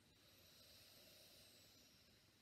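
Faint breath drawn slowly through one nostril during alternate nostril breathing: a soft, airy hiss that swells and then fades over about two seconds.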